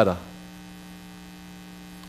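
Steady electrical mains hum from the sound system, a low even hum with no change, heard in a pause between spoken words.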